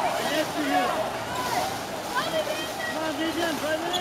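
Several voices shouting and calling out over the steady splashing of water polo players swimming in a pool.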